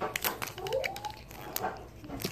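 Handling noise of adhesive tape and a pipe-cleaner bracelet being worked by hand: a run of short crinkly clicks and rustles, densest at the start and again about a second and a half in, with one short rising pitched sound about half a second in.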